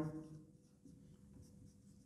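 Faint sound of a marker pen drawing on a whiteboard, following the fading end of a man's speech.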